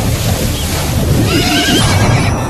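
A horse whinnies once, a wavering call late in the stretch, over a steady low rumble.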